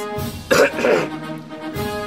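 A man coughs to clear his throat, two quick bursts about half a second in, over background music with steady held notes.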